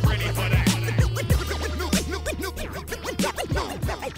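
Hip hop instrumental with DJ turntable scratching, many quick back-and-forth sweeps, over a bass line and drum beat. The bass drops out near the end.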